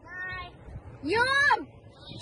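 A young girl's voice giving two drawn-out, high-pitched calls. The second is louder, about a second in, rising and then falling in pitch.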